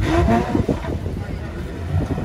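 Ferrari sports car's V8 engine running at low revs as the car rolls slowly up to the drag-strip start line, a steady low rumble with a few brief rises in pitch in the first second.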